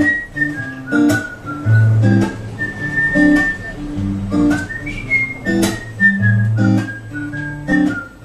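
Acoustic guitar strummed in a steady rhythm, a sharp stroke about once a second over ringing chords and bass notes. Above it runs a high whistled melody, one note at a time, stepping up and down.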